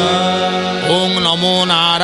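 Male voices singing a Hindu devotional chant in long, sliding notes over a steady harmonium drone.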